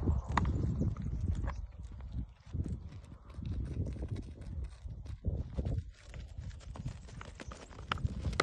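Goats' hooves clattering and scuffing on dry, stony ground as they rear and butt in play-fighting, with a few sharp knocks. A low, gusty rumble of wind on the microphone sits under it.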